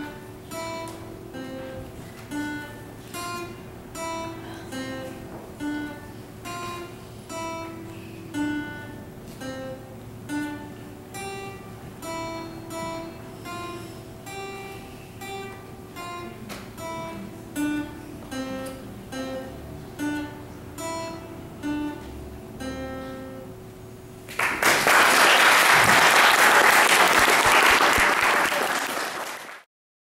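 Acoustic guitar played solo, picking single notes in an even, unhurried pattern. About three-quarters of the way in the playing ends and loud audience applause follows for several seconds, then cuts off abruptly.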